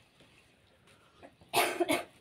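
A person coughing: one harsh cough about one and a half seconds in, followed at once by a second short one.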